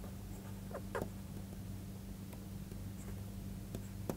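Faint taps and scratches of a pen stylus writing on a tablet, a few short ticks with two close together about a second in, over a steady low electrical hum.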